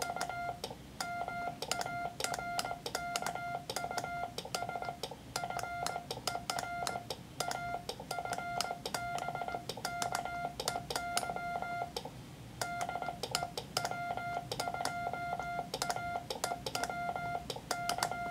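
Morse code sent with a BaMaKey TP-III miniature iambic paddle: a mid-pitched sidetone beeps out dots and dashes in groups with short pauses between them. The paddle levers click as they are worked.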